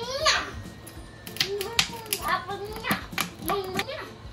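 A child's voice making sounds without clear words, starting with a steep rising squeal just after the start, with a few sharp clicks in the middle.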